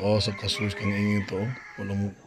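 Men laughing heartily in choppy bursts.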